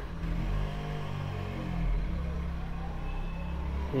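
Steady low mechanical rumble of a running motor, with its pitch wavering slightly.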